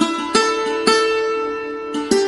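Music: a string instrument playing three slow single notes, each struck sharply and left to ring.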